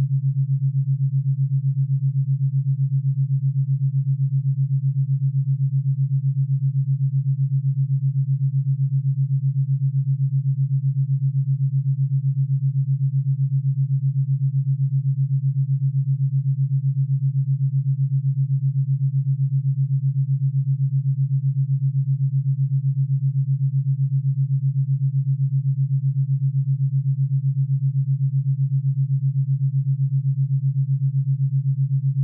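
Theta binaural beat: a steady, low pure sine tone that pulses evenly at the 7.83 Hz Schumann resonance rate, a little under eight pulses a second.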